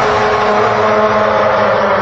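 Electronic beat playback: a dense, buzzy sustained melody played from a pitched-up vocal sample in a DAW, several notes held at once with no drums.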